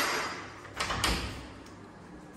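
A wooden door being handled: a clatter at the start that fades, then two quick knocks about a second in.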